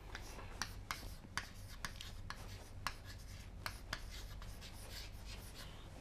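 Chalk writing on a chalkboard: a faint, irregular string of short taps and scratches as a word is written out.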